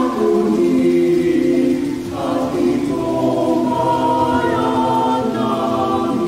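Choir singing a Tagalog Marian hymn in long held notes, moving to a new chord about two seconds in and again near the end.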